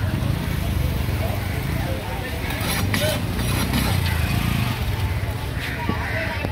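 Voices talking in the background over a steady low rumble.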